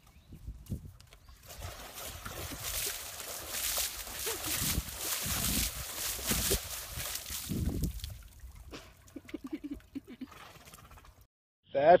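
Water splashing and sloshing in a plastic water tub as a horse plays in it with its head, throwing water out of the tub in uneven surges for several seconds before dying down.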